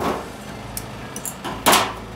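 A steel circlip dropped into a steel magnetic parts tray with a sharp clink, a few light metal ticks, then snap ring pliers set down on a metal workbench with a louder clatter near the end.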